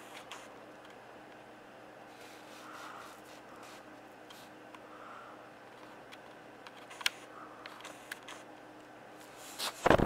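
Quiet room tone with a faint steady hum, a single sharp click about seven seconds in, then a cluster of loud bumps and knocks close to the microphone just before the end: a hand moving at the camera.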